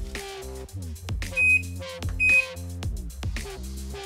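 Two short, high electronic beeps from an Iris Ohyama washing machine's control panel as its buttons are pressed, over background music.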